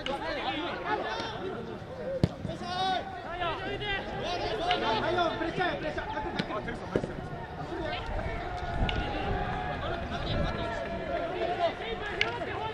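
Rugby players shouting and calling to each other across the pitch, many overlapping voices with no clear words, broken by a couple of sharp short knocks.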